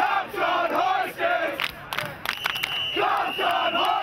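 A crowd of many voices shouting together in unison, in two long bursts, with sharp claps or clicks scattered through. A steady high-pitched tone joins about halfway through.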